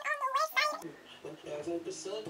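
A high, wavering vocal call in the first second, then faint music with steady held notes begins near the end.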